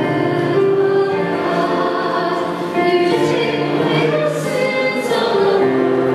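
Choir singing a slow hymn with keyboard accompaniment, long held chords that change every couple of seconds.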